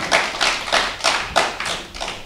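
Audience applauding, a spatter of clapping that dies away near the end.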